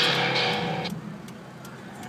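Inside a slowly moving car: steady low engine and road hum, with a louder burst of car-stereo sound in the first second that cuts off, leaving only the cabin hum.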